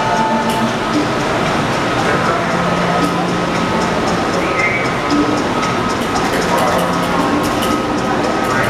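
Steady background ambience of an open-air shopping centre: a continuous wash of noise with indistinct voices and music, and a faint steady high tone throughout.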